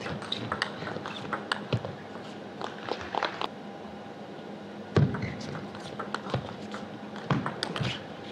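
Celluloid-free plastic table tennis ball clicking off rubber-faced bats and bouncing on the table during fast rallies, a quick string of sharp clicks, with a louder knock about five seconds in.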